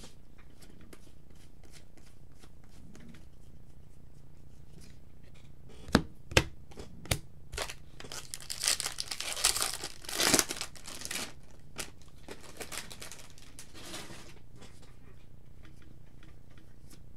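Foil wrapper of a baseball card pack torn open and crinkled, the tearing loudest from about eight to eleven seconds in. A couple of sharp taps come before it, and light clicks after it as the cards are handled.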